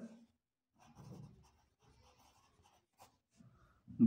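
Faint scratching of a pencil writing on paper, slightly louder about a second in.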